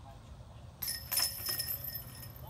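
A putted disc strikes the hanging chains of a metal disc golf basket a little under a second in, and the chains jangle and ring with a high metallic shimmer that slowly fades as the disc drops into the basket: a made putt.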